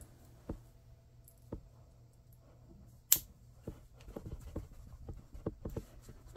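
Hands handling a metal pacifier clip and a soft cloth: a few faint clicks, one sharp click about halfway, then soft rustling and quick small clicks of the clip near the end.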